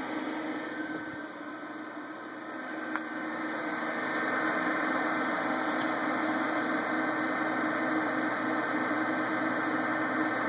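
Four Corsair SP120 static-pressure fans in push/pull on a Corsair H100i radiator running, a steady whir of rushing air over a low hum, getting louder about four seconds in.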